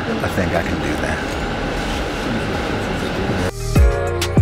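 Steady rumble and road noise inside a moving coach bus, with faint voices under it. About three and a half seconds in, this cuts off suddenly and a music track with a deep drum beat starts.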